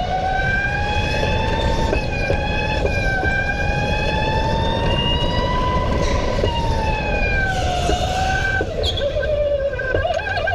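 Electric go-kart's motor whining. Its pitch climbs slowly for about six seconds, then falls as the kart slows, and starts to rise again right at the end, over a steady low rush of noise.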